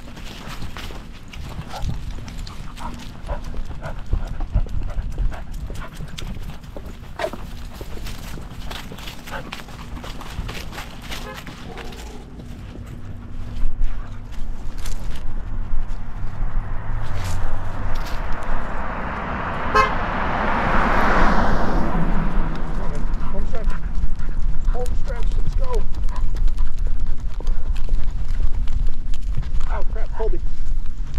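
A vehicle passing close by on the street: its noise swells over a few seconds about two-thirds of the way in, then fades. Light clicks of footsteps on the pavement and steady low noise on the microphone run underneath.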